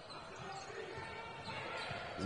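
A basketball being dribbled on a hardwood court under a low, steady murmur of arena crowd noise.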